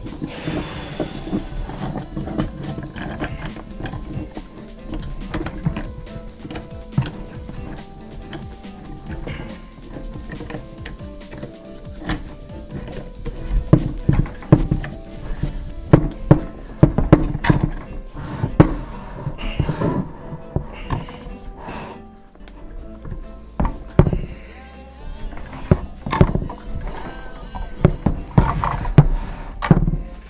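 Quiet background music under a run of sharp knocks and clicks, busier and louder in the second half: steel C-clamps and wooden cauls being handled and tightened down on a glued wooden instrument body.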